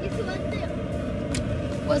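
Steady low rumble inside a car's cabin, with a short high hiss a little past halfway.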